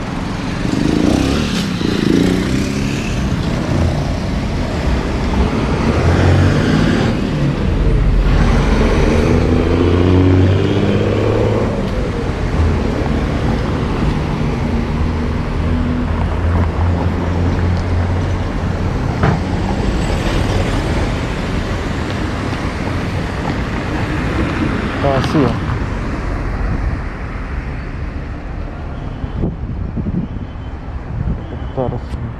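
City street traffic on a busy avenue: cars and motorcycles driving past, with engines pulling away in rising sweeps and a steady low engine hum that is loudest in the first half.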